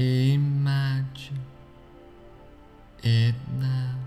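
A man's slow, drawn-out voice in two short phrases, one at the start and one about three seconds in, over soft, steady ambient background music.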